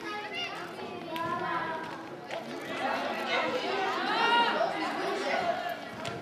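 Several high-pitched voices, children's among them, shouting and calling out over one another during a youth football match, growing louder from about three seconds in.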